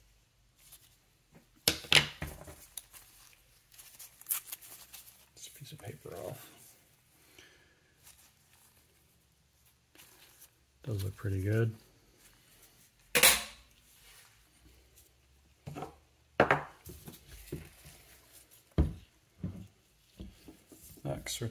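Rifle parts being handled on a workbench: a steel barrel band with its sling swivel clinking, and the wooden stock and metal parts knocking on the bench. Irregular clicks and knocks with quiet gaps, two sharp ones about two seconds in and near the middle.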